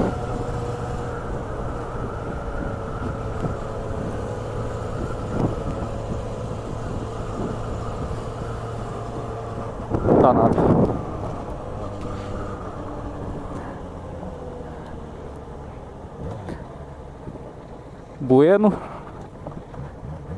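Yamaha XJ6 motorcycle's inline-four engine running at a steady cruise, with wind on the microphone; the engine note eases off and drops slightly in the second half as the bike slows. Short louder bursts of noise come about ten seconds in and again near the end.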